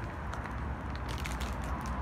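Steady low outdoor background rumble with a few faint crackles and clicks.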